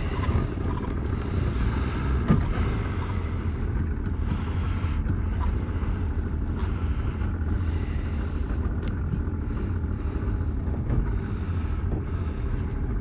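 Boat motor running with a steady low drone, with a few faint knocks on the hull.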